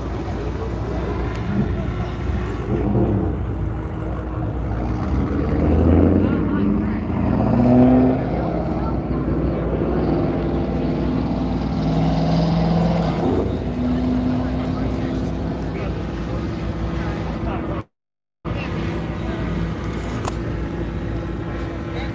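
Car engines running at a car meet, swelling louder twice, with a crowd's voices in the background. The sound cuts out completely for about half a second near the end.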